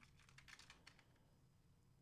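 Faint scattered keyboard clicks, as of light typing, during about the first second; otherwise near silence.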